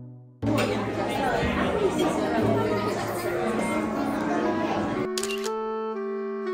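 Busy restaurant dining room chatter: many indistinct voices at once, with background music under it. About five seconds in the chatter stops and clean music with steady notes takes over, with a brief click.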